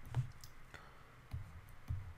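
Faint scattered clicks and soft taps of a stylus on a pen tablet as an equation is handwritten, about five in two seconds.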